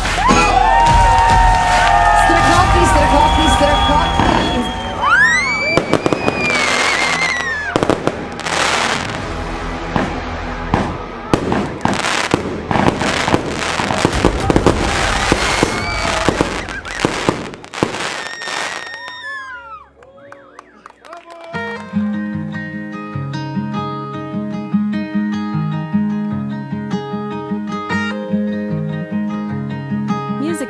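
Fireworks going off, with rapid bangs and crackling and a few whistling rockets, over dance music. After about eighteen seconds the bangs stop, and following a short lull a slower song's instrumental intro of steady notes begins.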